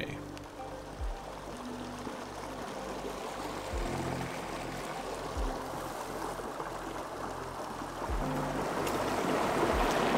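Shallow mountain stream water flowing, a steady rush that grows louder near the end, with soft background music and a low bass line underneath.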